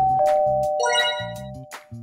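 Logo sting jingle: a two-note descending doorbell-like chime, then a brief sparkling chime flourish about a second in, fading out near the end, over background music with a steady low beat.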